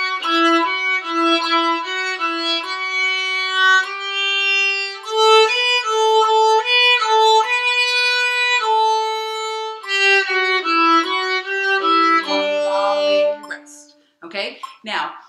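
Violin playing a slow practice exercise in eighth-note triplets: short bowed notes in quick groups of repeated and neighbouring pitches. The playing stops just before the end.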